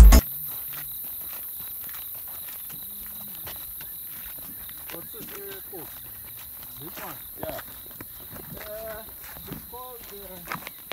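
Footsteps walking on a dirt track, with faint distant voices talking from about five seconds in, over a steady low hiss.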